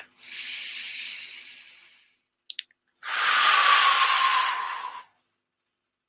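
A man takes one deep breath close to a headset microphone: a softer in-breath of about two seconds, a couple of small mouth clicks, then a louder out-breath of about two seconds with a faint falling whistle in it.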